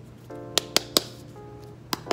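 Soft soul/R&B background music with held chords, over which come sharp clicks and taps from handling a hard eyeshadow palette case: three quick ones from about half a second to one second in, and another near the end.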